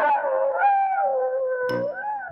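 A long, wavering animal howl that slides down and up in pitch, cartoon-style, loud enough to wake a sleeper. A plucked bass note from the score comes in near the end.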